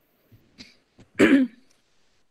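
A woman clearing her throat once, a short rasp a little over a second in.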